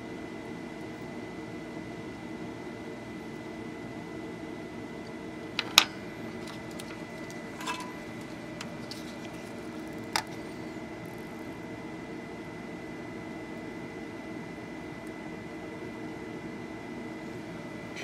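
Steady electrical hum with a faint high whine, broken by a few sharp clicks and taps from small parts and tools being handled on a wooden workbench, the loudest about six seconds in and two lighter ones near eight and ten seconds.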